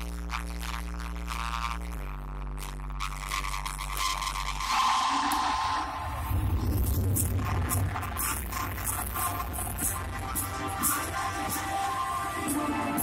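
Live band music: a held low droning chord that steps down about two seconds in, then swells into fuller music with regular percussion from about six seconds in.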